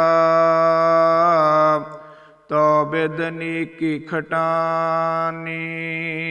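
A man's voice chanting Gurbani verses in long, held melodic notes, with a short break about two seconds in before the chant resumes.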